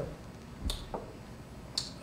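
Two brief, sharp clicks, about a second apart, over the low hum of a room.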